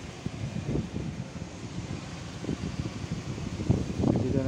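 Wind buffeting a phone's microphone: an irregular low rumble over a steady outdoor noise.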